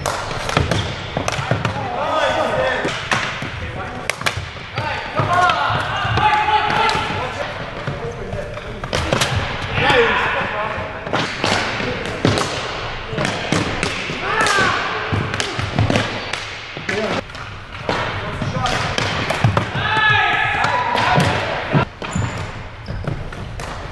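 Ball hockey play on a hardwood gym floor: a run of sharp knocks from sticks clacking together and striking the ball, echoing in the hall. Players' voices call out several times, louder at moments through the play.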